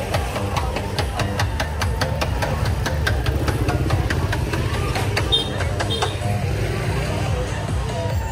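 Busy street sound: an engine running low and steady under voices and music, with a fast run of sharp clicks.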